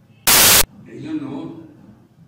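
A single loud burst of static hiss, under half a second long, about a quarter second in, starting and cutting off suddenly: a glitch in the recording.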